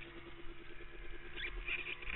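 Quad ATV engine idling quietly, with a few short high squeaks near the end.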